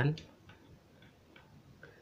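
A few faint, irregular light clicks from hand work on the underside of a Typical GN 794 high-speed sewing machine while its feed-dog locking screw is being loosened.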